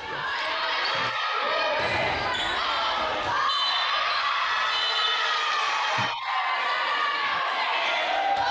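Indoor volleyball match audio in a gymnasium: a steady din of many voices from the stands and court, with ball contacts and a sharp knock about six seconds in.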